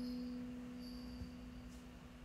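A single string note left ringing, one steady pitch slowly fading away over faint room tone.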